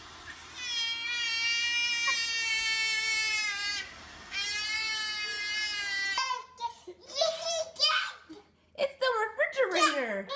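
A baby giving two long, high, sustained squeals, the first about three seconds and the second about two, over the faint steady hum of the robot vacuum she is riding. From about six seconds in, short broken child vocalising follows.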